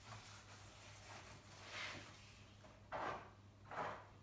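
Cloth pad rubbing oil into a sanded burr horse chestnut board: faint scuffing strokes, the two loudest near the end.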